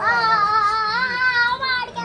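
A child's high voice holding one long, slightly wavering note for nearly two seconds.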